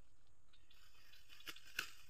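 Two short snaps of grass and weeds being torn by hand, near the end, over a faint outdoor background.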